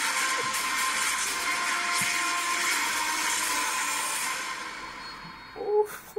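Movie trailer soundtrack played back through a speaker: a loud, sustained wash of music and explosion effects that holds steady, then fades out shortly before the end. A brief sound from the viewer's voice follows near the end.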